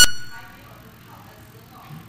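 A loud electronic chamber buzzer, one steady high tone, cuts off at the very start and dies away in the hall within half a second, marking that a speaker's allotted time is up. Then a faint, quiet room with a distant murmur.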